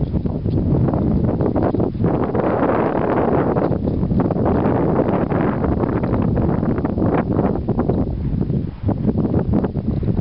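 Wind blowing across the microphone: a loud, rough rumble that rises and falls in uneven gusts.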